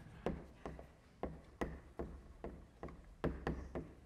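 Chalk tapping and scraping on a blackboard as words are written: a run of sharp, irregular clicks, about two to three a second.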